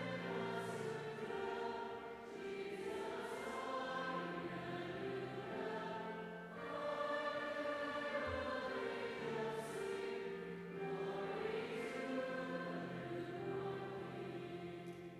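Mixed choir of teenage voices singing together, held phrases broken by short breaths about two, six and a half and eleven seconds in.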